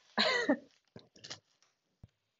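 A woman's short laugh, followed by a few brief, soft crinkles as a plastic food package is picked up.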